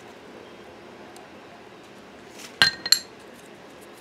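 A hot glue gun set down on the craft table: two quick clinks close together about two-thirds of the way in, each with a short ringing note.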